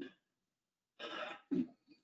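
A man clearing his throat about a second in: a short rough burst followed by a briefer one.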